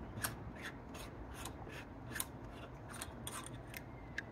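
Faint, irregular small clicks and scraping of a metal telescope visual back and eyepiece being unscrewed and handled, with a slightly sharper click a little after two seconds in.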